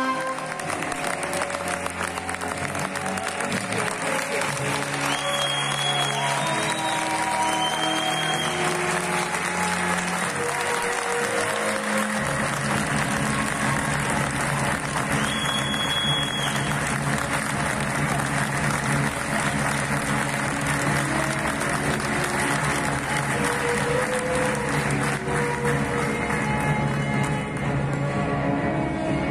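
A theatre audience applauding steadily throughout, over music. A low bass line enters about twelve seconds in, and a few short high tones cut through the clapping about five to eight seconds in and again near sixteen seconds.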